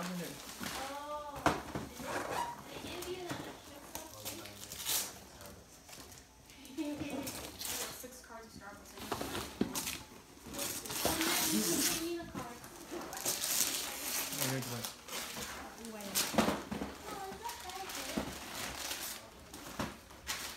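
Gift wrapping paper being torn and crinkled in repeated rips as a child unwraps a present, with voices talking at times.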